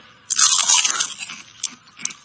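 A bite into a sandwich, then chewing: about a second of crackling that fades away, with a single short click near the end.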